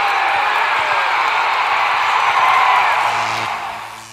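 Crowd cheering and whooping, a dense steady roar that fades away near the end.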